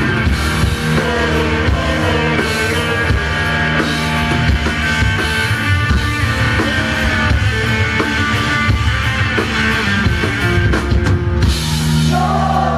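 Rock band playing live, with electric guitars and a drum kit, loud and steady throughout.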